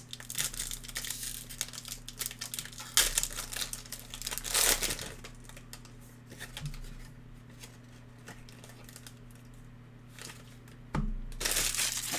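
Foil trading-card pack wrapper crinkling as it is torn open and the cards are pulled out, loudest in the first five seconds, then softer rustling. A short, louder burst of rustling comes near the end.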